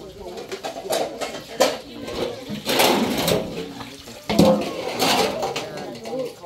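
Water from a garden hose splashing onto dishes and into a large aluminium basin as they are rinsed, swelling twice, about midway and again near the end, with a few sharp clinks of pots and dishes.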